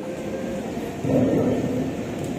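Steady, indistinct rumble of a large, crowded hall, swelling a little about a second in.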